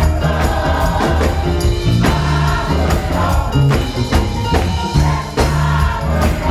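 Gospel choir singing with band accompaniment: strong low bass notes that change every second or so, under a steady beat of percussion strikes.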